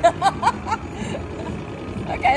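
A woman laughing briefly, a few short chuckles in the first second, over the steady background hum of a casino floor and slot machines.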